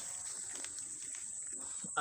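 Soft rustling of leafy undergrowth and footsteps as someone moves through dense plants, over a steady high-pitched insect buzz.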